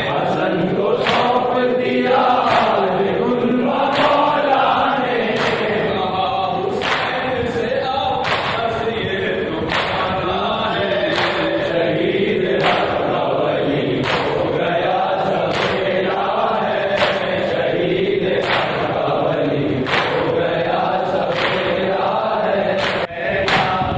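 A group chanting a noha together in a slow, even rhythm, marked by sharp matam beats, hands striking chests in unison, about one beat every second and a half.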